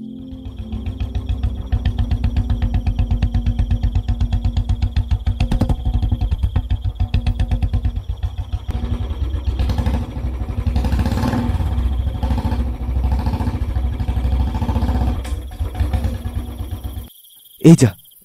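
Motorcycle engine running steadily with a rapid pulsing beat, then cutting off abruptly about a second before the end as the bike stops. Crickets give a steady high chirring throughout.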